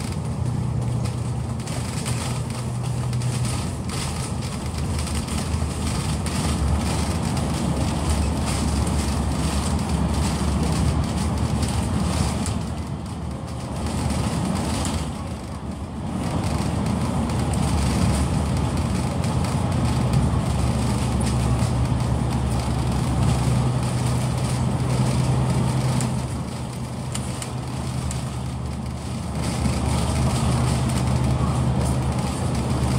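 Bus engine and road noise heard from inside the moving bus's cabin, a steady running sound with a low engine hum that eases off briefly twice and comes back.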